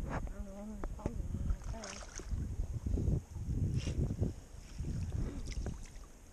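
Rumbling wind and handling noise on a body-worn camera microphone over shallow creek water, with small irregular knocks and splashes as a minnow trap is worked into the current. A short bit of voice comes through under a second in.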